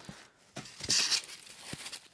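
Plastic packing wrap crinkling and foam packing rubbing as packing material is lifted out of a cardboard box, loudest in a short burst about a second in, with a few light knocks.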